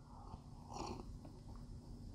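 Faint sipping and swallowing of beer from a glass, with a slightly louder soft mouth sound just under a second in.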